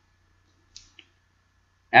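Near silence with two faint short clicks about a second in.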